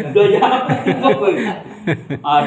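A man talking through a chuckle, his voice laughing softly as he speaks, with one short sharp click near the end.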